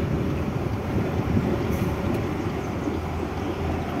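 Fuel tanker truck's diesel engine running steadily, heard from inside the cab as the truck rolls slowly.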